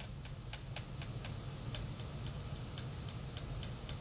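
Faint light ticking, about four clicks a second, over a low steady hum.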